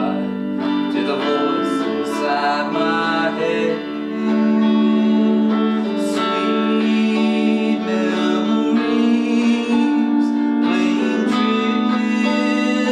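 Electric guitar and pedal steel guitar playing an instrumental passage together: picked guitar notes over the steel's long held notes, some of which slide in pitch.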